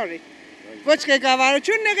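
A woman speaking; she breaks off about a second near the start, then talks on.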